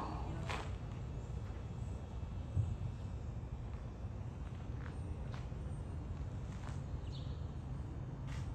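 A horse's hoofbeats in medium walk on soft sand arena footing, heard only as a few faint, irregular clicks over a steady low rumble.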